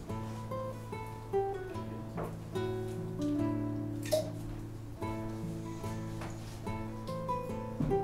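Music: plucked acoustic guitar playing a run of single notes over a low sustained note.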